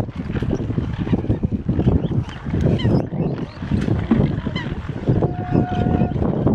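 A crowded flock of mute swans calling, many short overlapping calls over a dense, busy din of birds pressing round at feeding time. One steadier held call stands out near the end.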